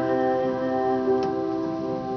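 Piano holding a final sustained chord that slowly fades, with a single faint click about a second in.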